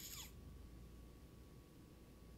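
Near silence: room tone with a faint steady hum, after a brief faint hiss with a falling pitch right at the start.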